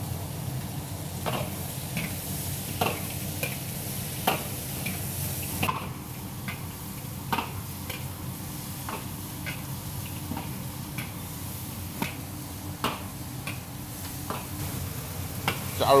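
Chopped rooster pieces sizzling in hot oil in a large wok, with a metal ladle scraping and knocking against the pan at irregular moments as they are stir-fried. The chicken is being fried to render the fat out of its skin.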